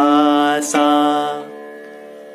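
The sargam note Sa sung twice at the same pitch on the syllable 'sa', each note held about three-quarters of a second, with a violin sounding the same note. It is the opening of a beginner's alankar in which each note is repeated twice.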